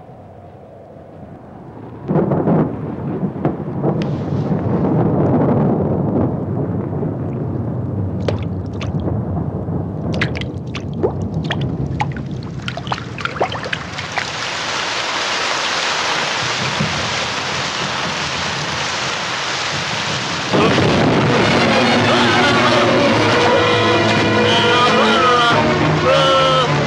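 Film sound effects of a thunderstorm: thunder rumbling and cracking, then heavy rain pouring steadily. About two-thirds of the way through, dramatic background music comes in over the rain.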